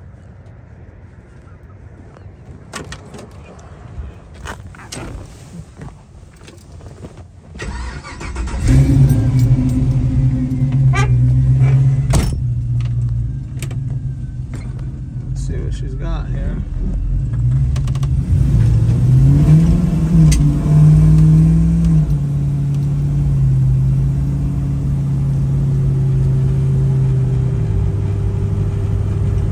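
Chevrolet LS3 V8 in a 1967 Camaro restomod starting about eight seconds in, after a few clicks and knocks, then idling steadily. It revs up and settles back around twenty seconds in, then runs steadily as the car pulls away near the end.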